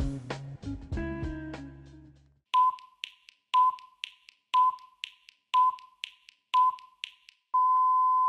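Background music fading out, then a round-timer countdown: five short electronic beeps a second apart followed by one longer beep at the same pitch, signalling the start of round one.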